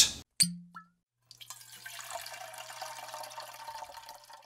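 A drink poured out in a steady trickling stream for about three seconds, starting about a second in.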